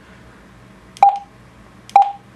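Juentai JT-6188 dual-band mobile radio giving two short mid-pitched key beeps about a second apart as its front-panel buttons are pressed. Each beep starts with a click.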